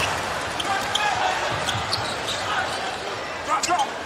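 A basketball being dribbled on a hardwood arena court, short bounces over a steady murmur from the arena crowd.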